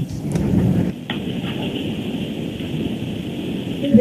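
Rough noise on a telephone line, with a click about a second in: a disturbed, failing phone connection.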